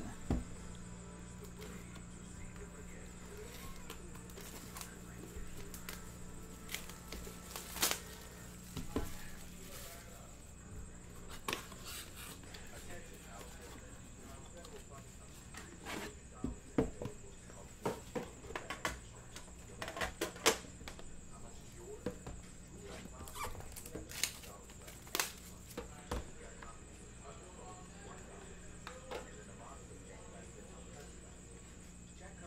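Cardboard card boxes and a metal tin being handled and set down on a table: scattered clicks and knocks, most of them in the second half, over a steady low hum.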